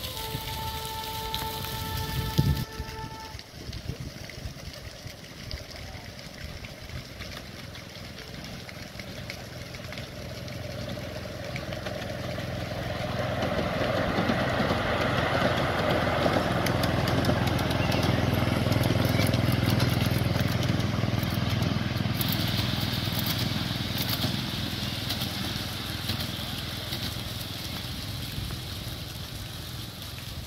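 A 7¼-inch gauge diesel-outline miniature locomotive and its passenger cars running past on the rails, engine and wheels growing louder as the train crosses a bridge, then fading as it runs away. A steady tone with several pitches sounds during the first three seconds, ending with a thump.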